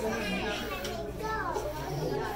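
Background chatter of children's and adults' voices, faint and overlapping, over a steady low hum.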